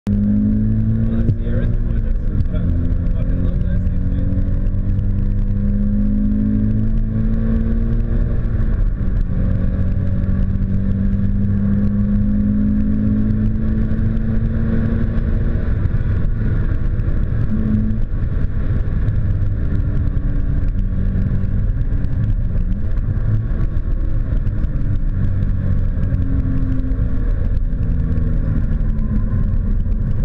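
Toyota 86's 2.0-litre flat-four engine heard from inside the cabin under hard driving, its note climbing and falling again and again through the gears, over a heavy steady rumble of road and tyre noise.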